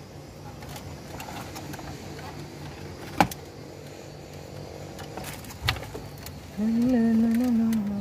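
Plastic dashboard trim and head-unit bracket being handled and lifted out. There is a sharp click about three seconds in and a softer knock near six seconds. For the last second and a half a man's voice holds one long drawn-out sound.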